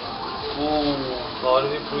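Speech: a man's voice talking in short phrases over a steady background hum in a small, enclosed room.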